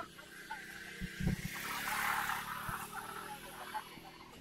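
A motor scooter's small engine running close by and pulling away past the camera, rising to a hissy peak about two seconds in and then fading. A few low bumps come around a second in.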